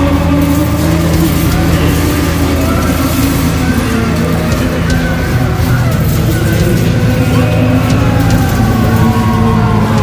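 Black metal band recording: distorted guitars and bass holding a dense, steady chord, with a wavering melodic line above.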